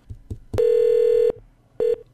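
A telephone line tone heard over the call: a steady buzzy tone held for about three-quarters of a second, then a second short burst near the end, as the call rings through before voicemail answers.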